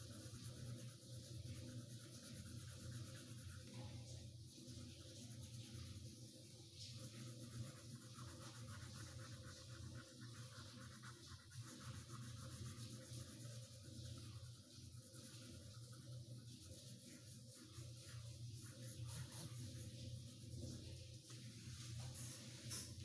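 Faint scratching of a coloured pencil shading on paper, over a steady low hum.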